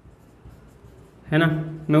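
Felt-tip marker writing on a whiteboard: faint, light scratching and small ticks of the tip across the board. A man's voice cuts in a little past halfway.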